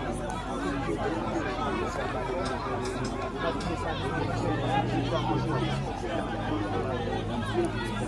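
Many people talking at once: overlapping outdoor chatter, with no single voice standing out.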